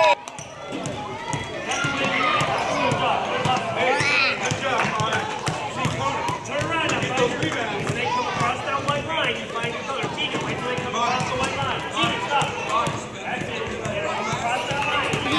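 Indistinct chatter and calls of young children and adults mixed with basketballs bouncing on a hardwood gym floor, a steady scatter of sharp bounces under the voices.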